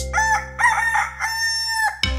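A rooster crowing once: a few short choppy notes, then one long held note that cuts off near the end. It serves as a morning wake-up cue, with a faint sustained music tone underneath.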